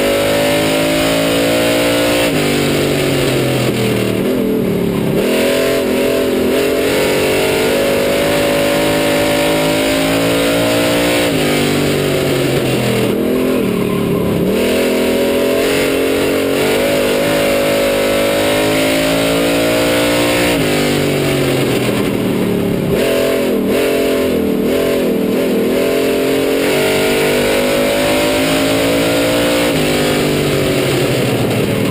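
Street stock race car engine heard from inside the car at racing speed, its note dropping as the driver lifts for the turns and climbing again on the straights, in a cycle about every nine seconds, lap after lap.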